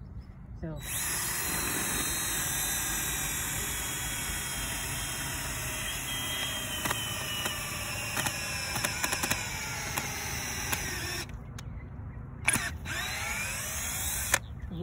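Cordless drill spinning a forage-sampling core probe into a hard-core round hay bale, a steady motor whine whose pitch sinks slowly as the probe bores deeper under load. It stops about eleven seconds in, followed by a short click and a brief burst.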